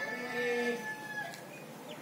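An animal's long, drawn-out call held at a steady pitch, dying away about a second in.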